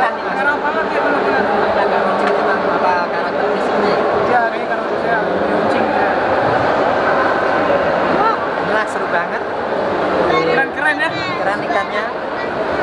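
Several people talking at once: overlapping conversation and crowd chatter in a large, busy hall.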